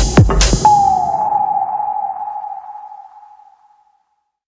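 The end of an electronic techno track: the last kick drum and cymbal hits in the first half-second, then a single ringing electronic tone that glides slightly downward and fades out to silence.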